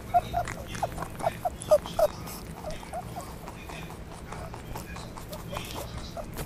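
A quick series of short, high squeaky animal calls, densest in the first two seconds and thinning out later, over a low steady hum.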